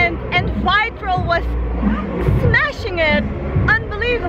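A woman's voice, animated and high in pitch, in quick phrases over a steady low rumble.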